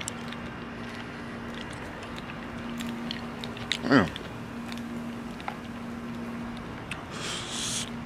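Close-up chewing of Hot Tamales chewy cinnamon candy: small wet clicks and smacks of the mouth over a steady low hum, with a short hiss of breath near the end.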